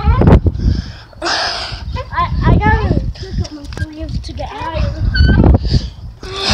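Children's high-pitched voices calling out without clear words, with a breathy noise burst about a second in, over heavy low rumble from wind and handling on the phone's microphone as it swings.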